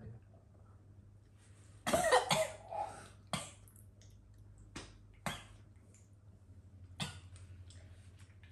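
A cough about two seconds in, then a few short, sharp clicks of glasses and dishes on the table, over a faint steady low hum.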